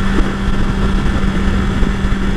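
2020 BMW S1000XR's inline-four engine running at a steady freeway cruise, one even engine tone with no rise or fall, under wind and road rumble.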